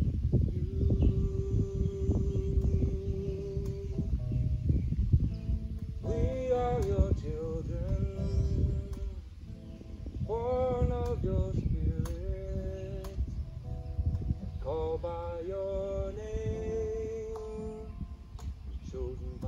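Acoustic guitar strummed, with a man singing a song over it in phrases.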